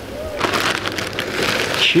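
Tortilla chips pouring from a crinkly plastic bag onto a glass plate, the bag rustling and the chips clattering, starting about half a second in.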